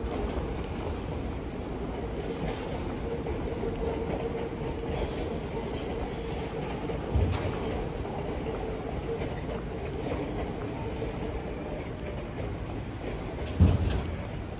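A train running out of view in the station, a faint steady whine over a low rumble; two short low thumps, about halfway and near the end.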